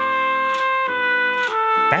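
Stock Samsung ringtone playing from a smartphone's speaker: a slow melody of long held notes, changing pitch about a second in and again near the end.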